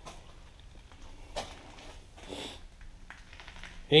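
Quiet room tone with two brief, soft noises about one and a half and two and a half seconds in.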